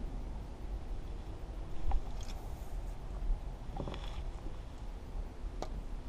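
Baitcasting rod and reel being handled: a few light clicks and knocks, about two, four and five and a half seconds in, over a steady low rumble.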